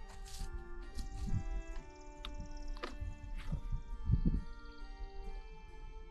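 Background music with sustained notes, with a few dull low thumps underneath, the strongest about four seconds in.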